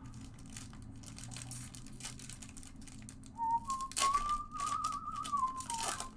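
Trading cards being flicked and shuffled by hand, a quick run of light clicks and foil-wrapper crinkle. From about three seconds in, a person whistles one long wavering note that rises a little and then falls away.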